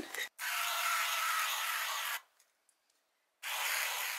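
Sun Bum SPF 70 aerosol sunscreen spray hissing steadily for about two seconds, then, after a sudden break, hissing again for about a second near the end.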